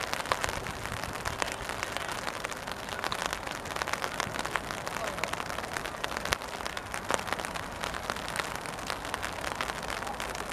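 Rain falling: an irregular patter of drops with sharp ticks scattered throughout.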